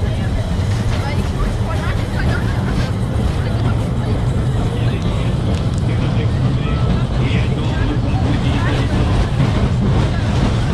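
Mine train roller coaster cars rolling slowly along the track with a steady low rumble, riders' voices chattering over it.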